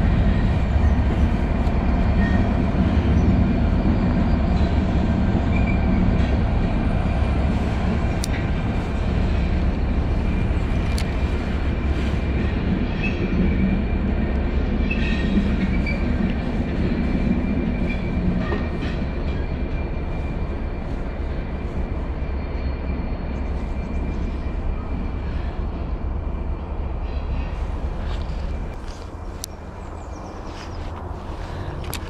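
A loud continuous low rumble that eases off slowly over the last few seconds.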